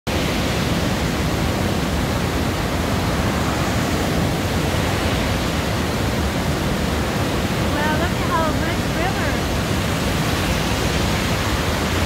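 Steady roar of a swollen river rushing in white-water falls and rapids over rocks, running high and fast.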